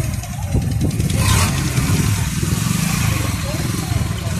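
A vehicle engine running with a steady low rumble, with a short rush of noise a little over a second in.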